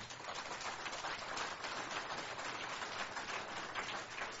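Audience applauding: a dense, steady patter of many hands clapping that starts as the speaker finishes and carries through.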